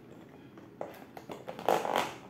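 Fingers picking and scratching at the cardboard end flap of a LEGO set box: a few small clicks and scrapes about a second in, then a louder scratchy rustle near the end.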